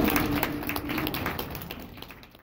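A children's choir holds its final sung note, which dies away about a second in, while the audience claps scattered hand claps. The whole sound fades out toward the end.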